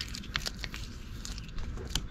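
Vinyl wrap film being pressed by hand onto a car bumper, giving a string of short, faint crackles and ticks as it is worked into the grooves.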